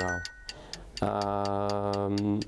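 Quiz-show stopwatch ticking sound effect, a fast, even tick about four to five times a second, counting down the answer time. From about a second in, a voice holds one long, level 'eee'.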